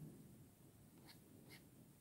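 Near silence: quiet room tone with two faint, light clicks about a second and a second and a half in.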